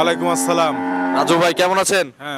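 A Jersey cow mooing: one long, steady call that wavers in pitch near its end.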